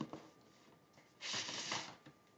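A vinyl record in its inner sleeve sliding out of a paper sleeve: one brief papery rustle, starting a little over a second in and lasting under a second.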